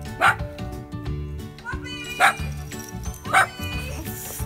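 A dog barks three times: once near the start, once about halfway and once near the end. Background music with a steady beat runs under the barks.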